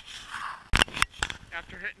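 Three sharp, loud knocks close to the microphone about a second in, then a man begins speaking.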